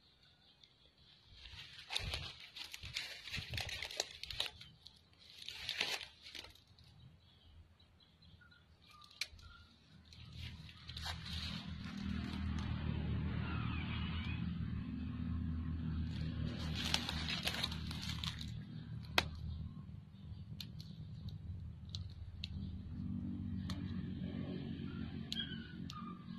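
Crackling rustle of dry leaves and a nylon snare line being handled for a few seconds, then from about ten seconds in a steady low drone with occasional light clicks.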